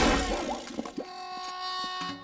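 Cartoon fight sound effects: a loud crash right at the start, fading into lighter clatter and knocks over a steady ringing tone.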